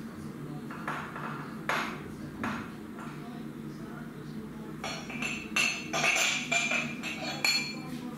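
Crockery and cutlery clinking: a few separate knocks in the first half, then a quick run of clinks and ringing pings over about three seconds, over a low steady hum.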